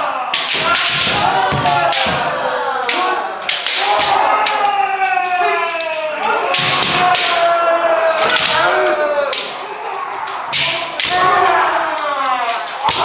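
Kendo practice: several voices shout long kiai that fall in pitch and overlap, over frequent sharp clacks of bamboo shinai striking armour and thuds of feet stamping on a wooden floor.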